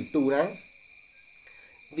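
Crickets trilling steadily at a high pitch behind a man's voice. He speaks for about half a second, then pauses for about a second and a half while the trill carries on.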